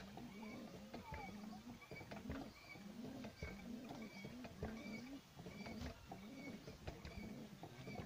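Faint pigeon cooing: a steady series of short, low coos, about two a second, each rising and falling in pitch.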